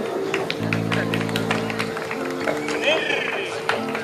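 Live stage band sounding a few long held low notes, the first lasting about a second and a half, with shorter ones after it, over a steady tone and the chatter and clatter of an outdoor crowd.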